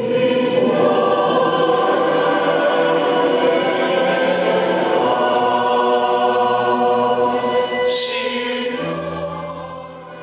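Church choir of mixed men's and women's voices singing a sacred piece, with held, sustained notes; the singing dies away over the last couple of seconds.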